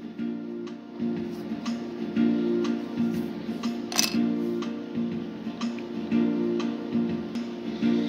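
Background acoustic guitar music, strummed chords, with a few sharp clicks over it, the loudest about four seconds in.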